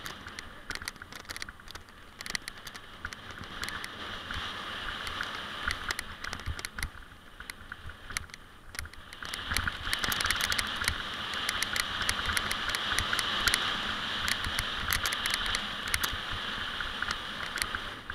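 Mountain bike rattling and clattering over a rough dirt trail, with many sharp clicks and a low rumble of wind on the helmet microphone. A steady high-pitched buzz grows louder about nine seconds in.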